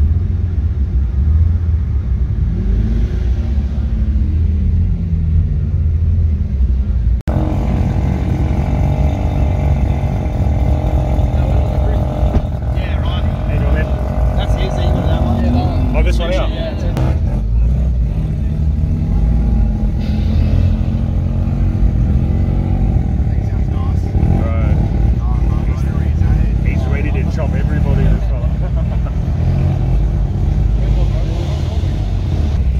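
Car engines running at low revs with a heavy rumble throughout, an engine note rising and falling in the first few seconds. The sound cuts abruptly about seven seconds in, and people talk in the background later on.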